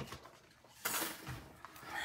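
Soft rustle of paper and cardstock being handled and slid on a desk, starting about a second in, after a brief click at the start.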